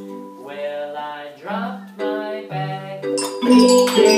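Music: a melody with sustained notes leads in, then about three seconds in a group of classroom xylophones and glockenspiels starts up, many mallets striking the bars together with bright ringing tones.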